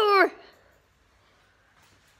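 A child's short, high-pitched vocal exclamation, sliding down in pitch and ending within the first half second.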